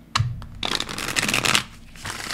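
A deck of tarot cards being shuffled by hand: a short snap of the cards just after the start, then about a second of dense fluttering card noise that stops near the end.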